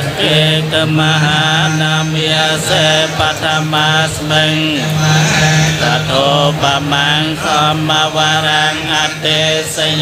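A group of Theravada Buddhist monks chanting Pali verses in unison through a microphone and loudspeaker. It is a continuous recitation over a steady, held low note.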